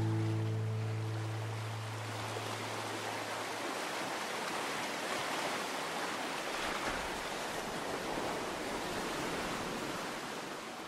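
A held musical chord rings out and fades over the first three seconds or so. Under it, a steady rushing sound of sea surf runs on and becomes the only sound.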